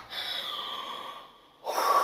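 A woman's breathy exhale as her song ends. About a second and a half in, a breathy 'whoo' begins that slides down in pitch.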